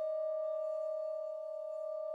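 Suspended cymbal bowed at its edge with a string bow, singing one steady ringing tone with a few fainter higher tones above it, slowly fading with a slight wavering in loudness.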